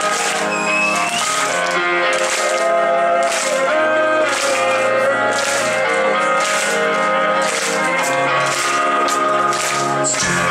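Live metal band playing a quiet, sparse passage: sustained keyboard chords over a light, regular high percussion tick about twice a second, with no bass or heavy guitars.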